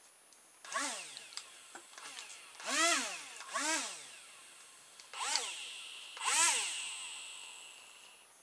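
Two tiny electric motors with small plastic propellers, run from a toy-car RC receiver, whining in about five short bursts as the transmitter is worked. Each burst rises in pitch as the motor spins up and falls as it coasts down, and the last one fades out slowly. Faint clicks come between the bursts.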